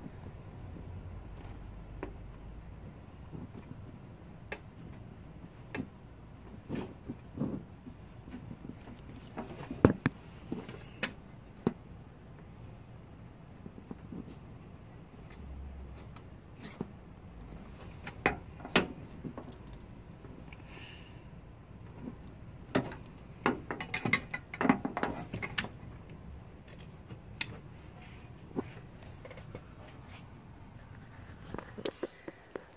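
Light, irregular clicks and taps of hand work with a soldering iron and solder wire on a TV's LED backlight strip connector, resoldering a joint that had no continuity. The taps come in a cluster late on.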